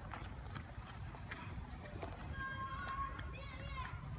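Outdoor ambience with low wind rumble on the microphone, light footsteps and scattered knocks as a boy runs over rough gravelly ground after a rolling tyre. In the second half a distant voice calls out.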